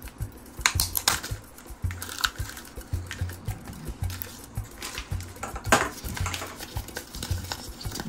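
A plastic gashapon capsule is twisted and pulled apart by hand, giving irregular clicks and snaps of the plastic shell. Then comes the handling of a plastic-bagged figure and a paper insert.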